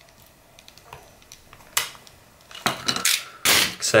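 Small clicks, then a sharp knock and a burst of hard clattering: the plastic grip plates of a Marui Glock 18C airsoft electric pistol being worked loose and handled, and tools and parts knocking against the bench.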